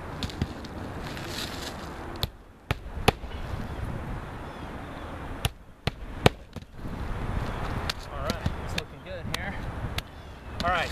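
Claw hammer driving roofing nails through asphalt shingles: sharp strikes in small irregular groups, the loudest about three seconds in and just after six seconds.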